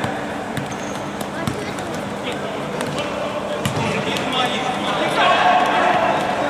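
Futsal ball being dribbled and kicked on an indoor hard court: several sharp thuds over a background of players' voices and shouts, which grow louder near the end as a shot is taken at goal.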